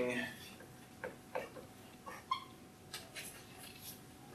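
A dry-erase marker squeaking in a few short strokes on a whiteboard, each lasting well under half a second, after a brief voiced sound right at the start.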